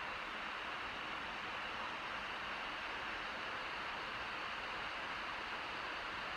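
Steady, unchanging hiss of cabin noise inside a car driving slowly.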